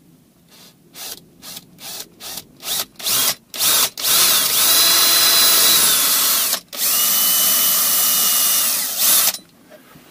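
Cordless drill boring a screw hole into a small wooden block, started with a string of short trigger bursts that grow longer. It then runs steadily twice, about two and a half seconds each with a whining motor, with a brief stop between, and halts about a second before the end.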